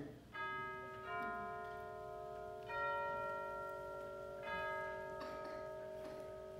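Bell chimes struck on a few different notes, about four strikes one to two seconds apart, each ringing on and slowly fading.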